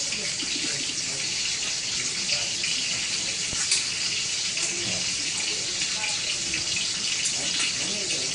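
A kitchen tap running steadily into a sink, an even hiss of water, with a couple of light clicks.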